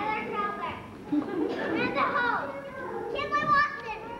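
Young children's high-pitched voices chattering and calling out over one another, with a louder exclamation near the end.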